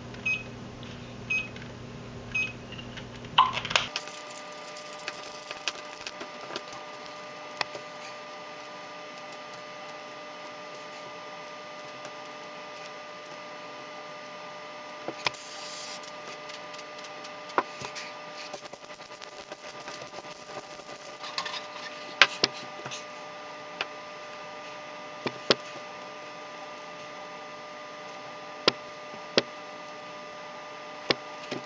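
Hard plastic Rubik's cube pieces clicking and tapping against each other and on a newspaper-covered table as the cube is taken apart and handled. About halfway through comes a short hiss of CRC Heavy Duty Silicone aerosol spray.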